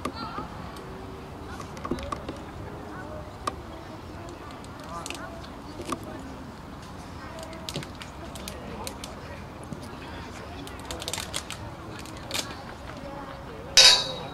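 Distant shouts and calls of youth footballers and spectators across an open pitch, with scattered short knocks of the ball being kicked. A loud, sharp sound stands out just before the end.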